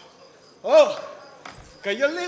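A man's short vocal exclamation about half a second in, its pitch rising then falling. A single knock follows, then a second, similar drawn-out call begins near the end.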